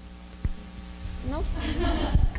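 Low steady electrical mains hum in the sound system, with a single sharp click about half a second in. A voice says a short "No" in the second half.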